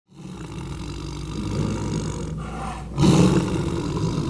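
A tiger roar sound effect with a heavy low rumble, building gradually and swelling louder about three seconds in.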